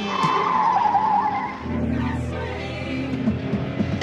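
Car tyres squealing in a wavering screech for about a second and a half as the car corners, over music.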